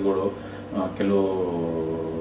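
A man's voice: a few short syllables, then a long drawn-out vowel or hum, held for about a second and a half and slowly falling in pitch.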